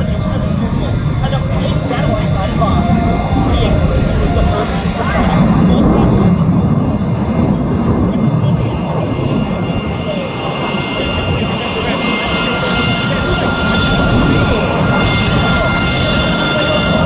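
F-22 Raptor's twin turbofan jet engines running loud in a display pass: a steady rumbling roar, loudest about six seconds in, with a high steady whine coming up in the second half.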